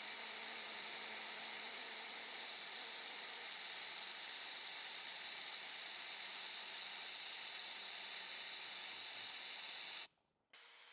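Compressed air rushing through an Airlift coolant vacuum-fill tool as it pulls vacuum on a Porsche 996 cooling system, a steady hiss. Leftover coolant still in the system is being pushed out through the tool's breather.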